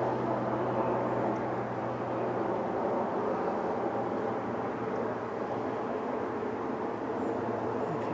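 Steady distant engine drone with a low hum, holding a fairly even level throughout.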